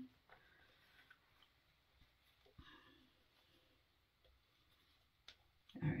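Near silence with faint rustling and a few small clicks as hands work fabric, feeding a drawstring threader through the waistband casing of a pair of shorts. One sharper click comes shortly before the end.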